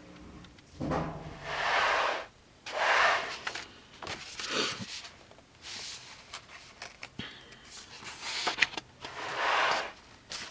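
Paper pages of an art journal being handled and turned by hand: a run of soft papery swishes, each up to about a second long.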